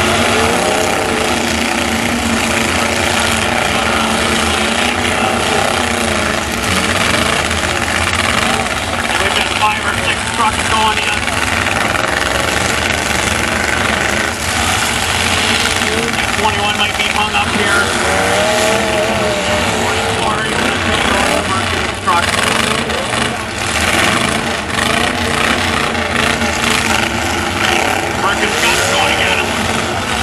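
Several demolition-derby pickup truck engines running and revving together, with a crowd of spectators talking and calling out close by.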